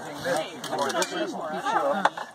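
People talking, the words indistinct.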